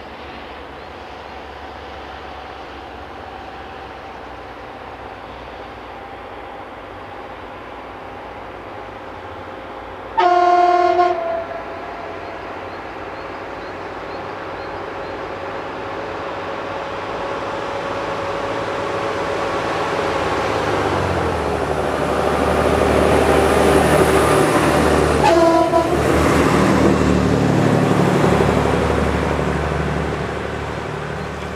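A DR class 172 (DB 772) 'Ferkeltaxi' diesel railbus approaches and passes. Its horn sounds for about a second, then its engine and running noise grow louder. A second, shorter horn blast comes as it goes by, and the sound begins to fade near the end.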